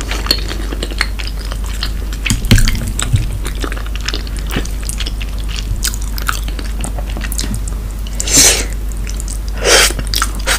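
Close-miked chewing and wet mouth clicks of someone eating creamy shrimp gratin with stretchy mozzarella, with two louder, longer noisy sounds near the end.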